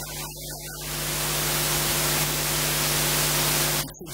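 Loud, steady static-like hiss with a low electrical hum running underneath, cutting off suddenly just before the end.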